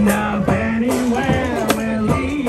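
One-man band playing a fast song live, with sharp percussion hits about every half second under one long held note.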